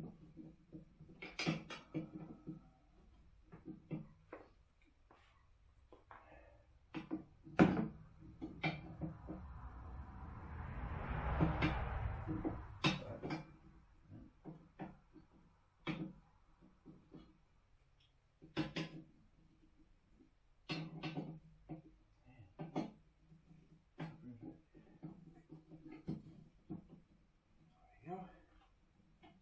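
Scattered clicks and clanks of a steel cart handle and carriage bolt being fitted and tightened onto a garden dump cart, some knocks ringing briefly in the metal. About ten seconds in, a rushing noise swells and fades over a few seconds.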